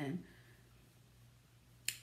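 A single sharp click near the end, after a short hush; an awful sound.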